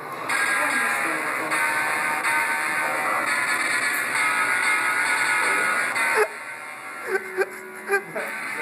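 Electronic guitar t-shirt's built-in speaker playing electric guitar chord sounds as the printed strings are strummed, the chord changing a few times before it cuts off about six seconds in.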